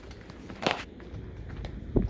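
Footsteps in flip-flops on concrete: two sharp slaps a little over a second apart.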